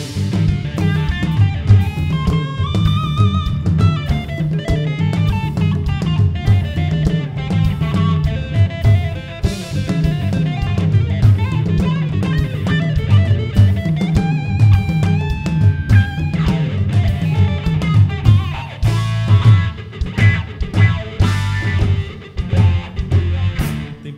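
Instrumental break of an up-tempo côco de embolada played live: a guitarra baiana, the small solid-body Bahian electric guitar, picks fast lead melody runs over a steady drum kit groove.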